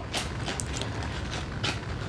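A sheet of printer paper being handled and moved, giving a few short rustles.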